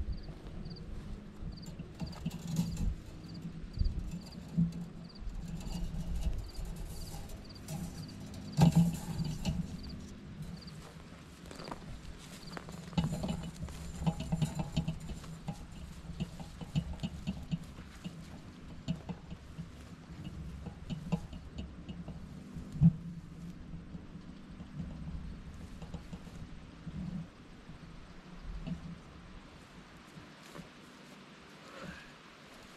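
Fence wire being unrolled and dragged through dry grass and cedar branches: irregular rustling and crackling with a few sharp snaps, over a low rumble. A faint high chirp repeats about twice a second through roughly the first twelve seconds.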